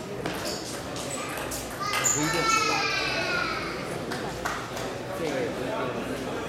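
Celluloid table tennis ball being struck back and forth in a fast rally, a sharp click every fraction of a second. About two seconds in the clicks give way to a loud, long shout falling in pitch as the point is won, followed by a few scattered knocks and hall murmur.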